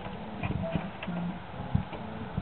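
Wooden lid of a box-monster Halloween prop knocking and clattering as the clawed creature inside pushes it open: a run of irregular knocks, the sharpest near the end, over a low voice-like sound.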